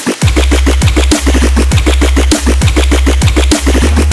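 Trap drop from an electronic track: a rapid, even run of punchy percussion hits over a loud, sustained 808-style sub-bass that comes in about a quarter second in.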